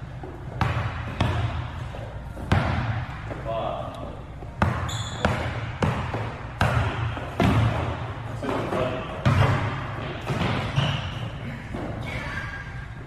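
A basketball being dribbled on an indoor hardwood court: a dozen or so sharp bounces at uneven intervals.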